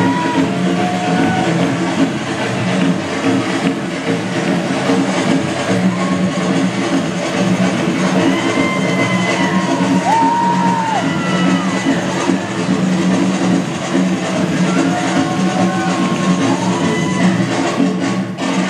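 Music for a samba dance, with a tall conga-style hand drum played live and steady throughout, and some short gliding melodic tones over it.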